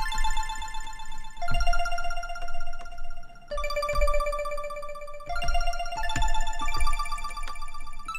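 Synthstrom Deluge groovebox playing a pattern: a sampled, plucked-sounding tone arpeggiated fast across octaves, with a lot of delay and reverb, moving to a new set of notes about three times, over low drum thumps.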